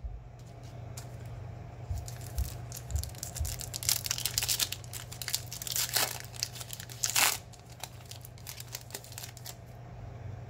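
Foil wrapper of a Panini Prizm baseball card pack crinkling and tearing as it is ripped open by hand, with the loudest rips about four and seven seconds in. A steady low hum runs underneath.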